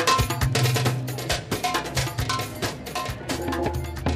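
Hand drums played in a fast, busy rhythm, with a bright metallic ringing struck over them again and again.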